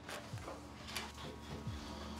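Faint, low sustained background music score, with a few soft rustles.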